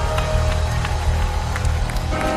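Gospel band music under a pause in the preaching: held keyboard chords over a bass line, with regular drum and cymbal hits.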